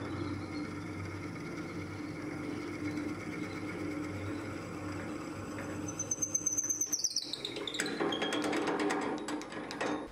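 Wood lathe running with a steady hum while a twist drill bit fed from the tailstock bores into a spinning maple burl blank. From about six seconds in the cut turns rough and chattering, with a brief high tone that falls in pitch.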